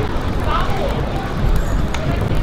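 Distant voices over a steady low rumble of outdoor noise.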